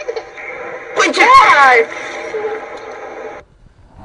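Soundtrack of an amateur video clip playing back: a steady hum with a faint whine, and a single loud exclaiming voice about a second in. All sound cuts off abruptly shortly before the end.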